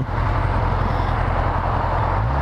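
Motorcycle engine running steadily at low road speed, its low hum overlaid by an even rushing noise.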